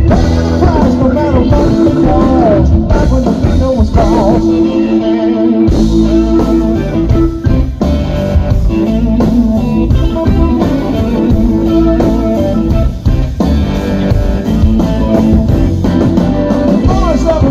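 Live blues-rock band playing an instrumental passage, led by electric guitar with bent notes over bass and drums. About four seconds in, the bass and drums drop out under a held guitar note for a moment, then the full band comes back in.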